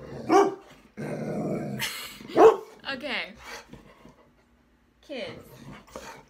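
Pet dog growling and giving short barks and yelps in a squabble with a cat. There is a rough growl about a second in, and the loudest sharp cry comes about two and a half seconds in.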